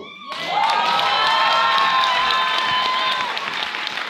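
A live audience applauding and cheering, with a long held shout of cheering carried over the clapping from about half a second in to about three seconds in.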